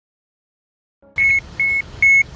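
Mammut Barryvox Element avalanche transceiver beeping in search mode: two short, high beeps about half a second apart, starting about a second in. The beeps are the audio guide that leads the searcher toward a buried transmitting beacon.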